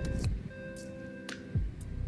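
Background music with held, steady tones and light ticking percussion.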